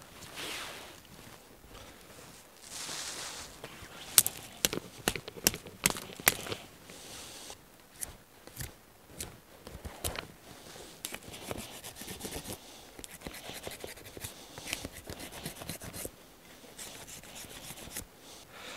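A knife working a freshly cut green stick. About four seconds in come several sharp clicks and snaps as the stick is cut, and later come runs of quick scraping strokes as the blade shaves the bark off.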